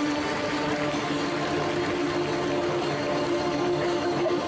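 Live rock band music: one steady, held chord over a dense wash of noise, starting abruptly.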